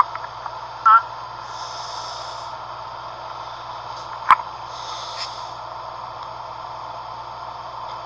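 Steady low hum and hiss of a recorded phone line during a pause in the call. There is a brief faint vocal sound about a second in and a single sharp click about four seconds in.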